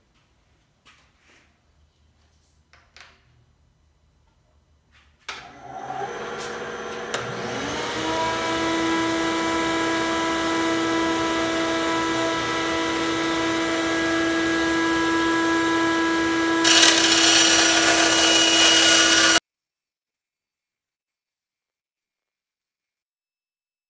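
Benchtop bandsaw switched on after a few faint knocks: a whine rises as the motor comes up to speed, then runs steadily. Near the end a louder, hissier sound joins as the blade cuts into the fiberglass stabilizer skin, and then the sound cuts off abruptly.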